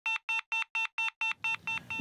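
An electronic alarm beeping rapidly, about four short, buzzy beeps a second, the last few softer.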